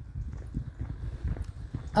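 Footsteps of people walking, heard as faint irregular low knocks under a low rumble.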